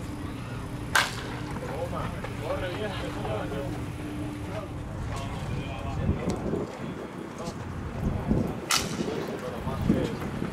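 Two sharp cracks of a pitched baseball at home plate, about a second in and again near the end, with faint voices calling out between them.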